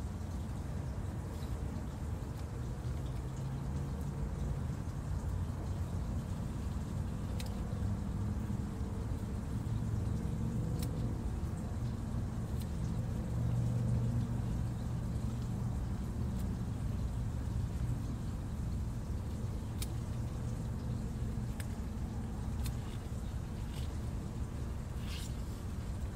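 Steady low rumble that swells a little around the middle, with a few faint, sharp snips of scissors cutting leafy greens.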